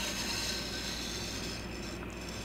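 Sword blade drawn along a wet 1000-grit whetstone with light pressure: a steady scraping of steel on stone.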